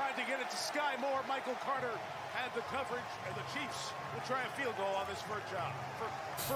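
Televised NFL game audio: a play-by-play commentator talking over steady stadium crowd noise.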